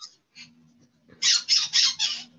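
Pet parakeet chattering: a few faint high chirps, then about a second in a quick, loud run of about five squawky calls.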